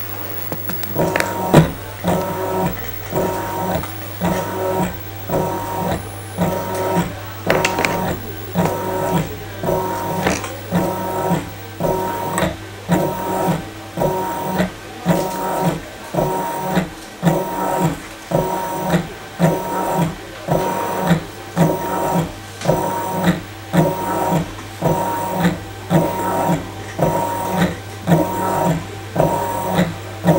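Several Arduino-driven wire-bending machines running together, their motors whirring in a regular cycle about once a second, each cycle one bend of the aluminium test wire. A steady low hum runs underneath.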